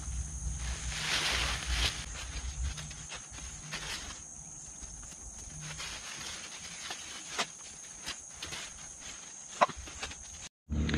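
Cucumber vines and leaves rustling and snapping as they are pulled out of a garden bed by hand, loudest in the first couple of seconds, with a few sharp clicks later on. A steady high insect chorus drones behind.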